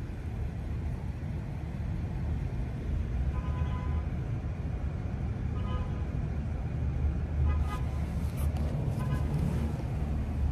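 Steady low rumble of a car idling, with faint, brief snatches of distant voices now and then.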